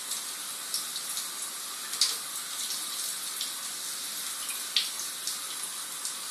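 Kitchen tap running steadily into the sink, with a few small splashes and clicks as a cat scoops water from a mug with its paw and laps it.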